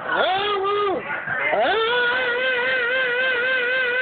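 A man singing a gospel song: a short sung phrase, then from about two seconds in one long note held with a wavering vibrato.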